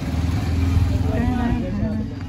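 Motorcycle engine running as it rides past close by, swelling to its loudest about a second in and then fading.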